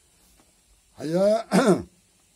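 A man's voice: two short vocal sounds about a second in, the second falling in pitch, after a second of quiet room tone.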